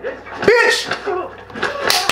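Fight-scene soundtrack of a Korean TV drama: a man shouting in Korean with short vocal bursts, and a quick run of sharp hit sounds near the end.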